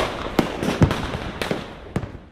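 Fireworks going off: five sharp bangs about half a second apart over continuous crackling, dying down near the end.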